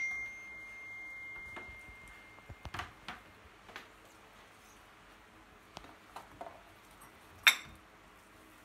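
Light, scattered knocks and clinks from handling things at a kitchen counter, with one sharp knock near the end. A steady high-pitched tone sounds for the first two and a half seconds or so.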